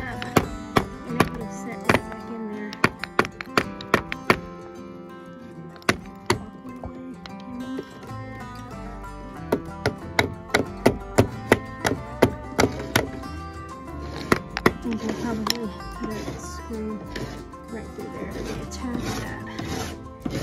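Hammer striking wood in quick runs of sharp knocks, driving a weathered wooden porch-railing brace back up to its proper angle, over background music.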